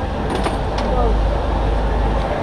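Rally service-area ambience: a steady low rumble with a few sharp clicks of mechanics' hand tools at the car's stripped front hub, and voices in the background.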